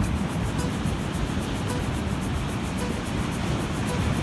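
Sea waves washing steadily onto the shore, a continuous rushing surf noise, with faint background music over it.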